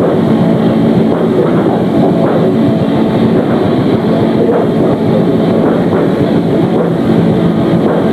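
Live death/black metal band playing: a loud, unbroken wall of distorted guitars and fast drumming, dull and lacking treble in a low-fidelity recording.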